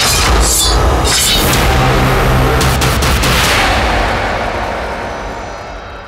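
Film-trailer music and sound effects on the closing title: a heavy boom at the start under dense score, a few sharp cracks about three seconds in, then the whole mix fades away over the last couple of seconds.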